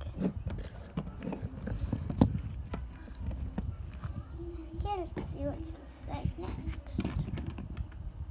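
Fingers rubbing and bumping a phone close to its microphone, with a low rumble and scattered clicks and knocks. A child's voice sounds briefly about five seconds in.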